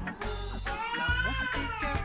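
Background music with a steady beat, and a baby crying in one long wail that rises and falls from about a second in.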